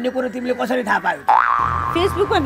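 A comic 'boing'-type sound effect, about a second in: a single tone that slides up sharply, then wavers for about half a second, following a man's speech.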